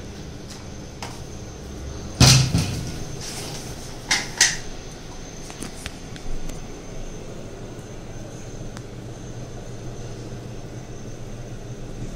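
Kitchen cupboard and plastic spice jars being handled: one loud knock with a short ring about two seconds in, two quicker knocks about four seconds in, and a lighter tap a couple of seconds later, over a low steady hum.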